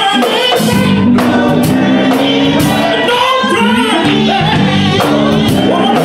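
Gospel choir singing with instrumental accompaniment, hand claps keeping the beat about twice a second.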